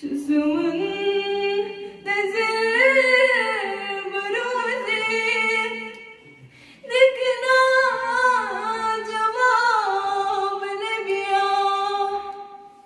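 Unaccompanied female singing of a Kashmiri naat, a devotional song in praise of the Prophet. It comes in two long, melismatic phrases, with a short breath pause about six seconds in.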